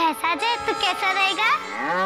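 A child's voice chattering quickly, then near the end one long, drawn-out moo-like call that rises and then falls in pitch.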